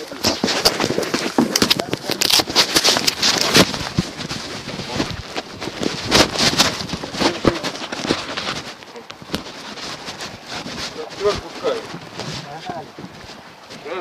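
Microphone handling noise: a dense run of rustling, scraping and knocking as the phone rubs against skin and fabric, busiest in the first few seconds and thinning out later.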